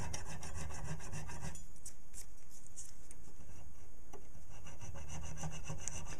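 Hand file scraping back and forth across a small metal part held in a vise, cutting a slot. The strokes come regularly for the first second and a half, thin out to a few quieter ones, then pick up again near the end.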